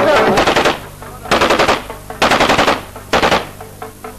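Four short bursts of rapid automatic gunfire, each about half a second long, with brief gaps between them.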